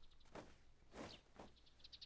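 Near silence with faint birds chirping: short, quick trills, the clearest near the end, over a few soft swishes.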